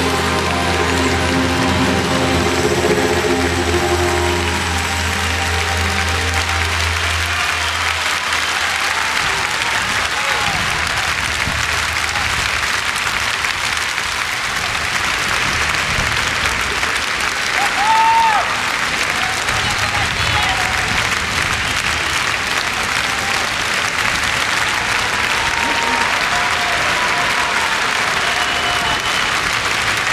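A song's final held chord with a low bass note rings out and ends about eight seconds in. A large arena audience applauds steadily through the rest, with a brief louder burst about eighteen seconds in.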